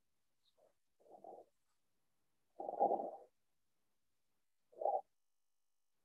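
Three short, muffled low sounds picked up over a video-call microphone, the middle one the longest and loudest.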